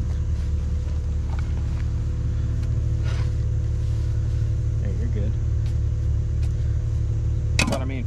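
An engine idling steadily, a low rumble with a steady hum, under a spade scraping and chopping into clay soil. Just before the end there is one sharp knock as the spade is planted in the ground.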